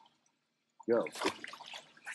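Short splash of a bass dropped back into the lake, with water dripping, heard about a second in alongside a spoken word.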